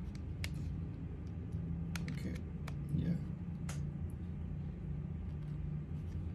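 A few light clicks and taps as two small plastic power banks are held and pressed together by hand, one plugged into the other's Type-C port, over a steady low hum.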